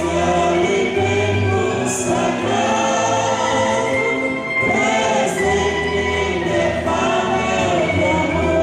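A choir singing a hymn with instrumental accompaniment, low bass notes held under the voices.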